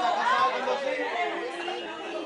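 Several people talking at once, overlapping voices and chatter with no single clear speaker.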